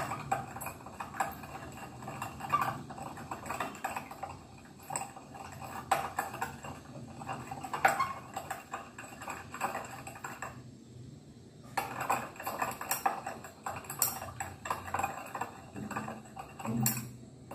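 A glass stirring rod clinking and tapping irregularly against the inside of a glass beaker while copper sulphate crystals are stirred into water to dissolve them. There is a short pause about two-thirds of the way through.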